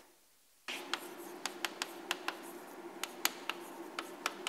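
Chalk on a blackboard as an equation is written: a run of sharp, irregular taps and short scratches over a faint steady room hum. The sound cuts out entirely for about the first half-second.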